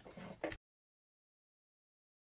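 Near silence: a faint bit of room sound in the first half second, then the audio cuts out to dead silence.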